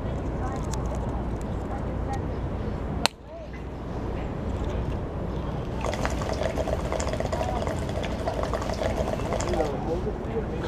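Water bubbling and gurgling in a homemade coffee-mug waterpipe as smoke is drawn through it, a steady bubbling for about four seconds in the second half. Before it, a sharp click about three seconds in over steady outdoor city rumble.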